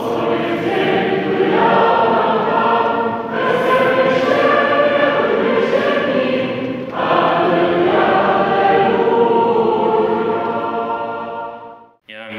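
A choir singing a hymn in long, held phrases, with breaks about three and seven seconds in, fading out near the end.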